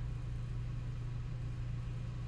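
Steady low hum of the recording's background, unchanging throughout, with no speech.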